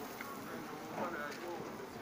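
Passers-by talking, several voices overlapping at conversational distance over general street noise.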